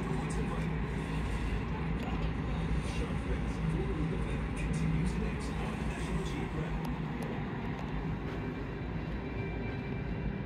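Steady low rumble with a constant hum, typical of a hotel room's air conditioning running.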